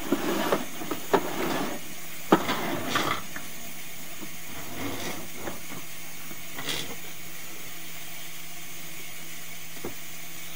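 Sewer inspection camera's push cable being pulled back out of a kitchen drain line: irregular knocks, clicks and scraping, busiest in the first three seconds and sparser later, over a steady low hum.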